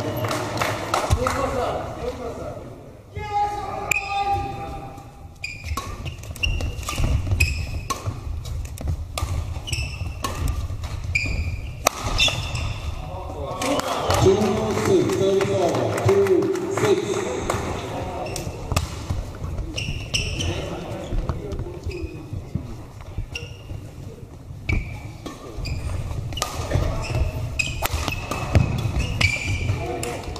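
Badminton doubles rallies on an indoor court: sharp racket strikes on the shuttlecock and players' footsteps thudding on the court floor, with voices of players and onlookers between points.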